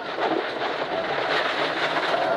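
Ford Escort Mk1 rally car at speed on gravel, heard from inside the cabin: the engine running hard under a dense wash of tyre and gravel noise, with scattered clicks and rattles throughout.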